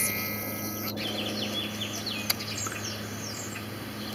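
Birds chirping: a quick string of short, high chirps between about one and three seconds in, over a steady low hum.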